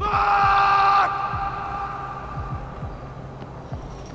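A young man screaming a long, drawn-out "fuuuck!" while running, loudest for about the first second and then trailing away over the next two, with low thuds of running footsteps underneath.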